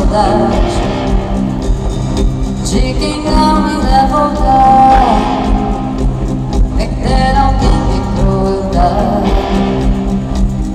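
Live amplified band music with a singer carrying the melody, loud and continuous, recorded from the audience of an arena concert.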